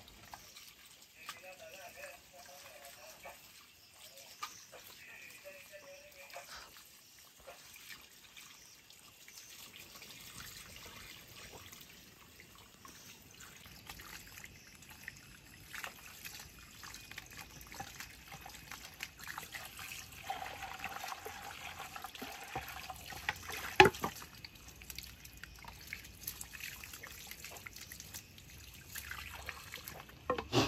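Water trickling from a garden hose onto a wooden board and wet ground as leafy herbs are rinsed under it, with scattered light clicks and one sharp knock late on.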